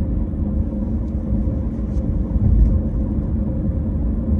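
Steady low rumble of a car heard from inside the cabin, engine and road noise with no other events.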